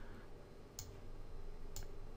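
Two computer mouse button clicks, about a second apart, over a faint steady low background hum.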